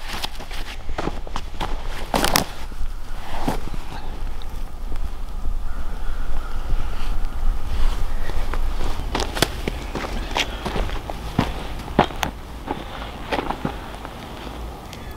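Footsteps scuffing and crunching on dry dirt and grass, with irregular rustles and clicks from someone moving around and crouching, over a low wind rumble on the microphone.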